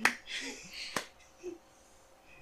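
Two short, sharp clicks about a second apart, with faint quiet sound between them.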